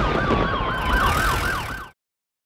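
Emergency-vehicle siren in a fast yelp, about five sweeps a second, with a second steady tone sliding slowly down beneath it; it cuts off suddenly near the end.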